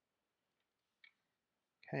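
A single faint click of LEGO plastic parts being handled about a second in, against near silence.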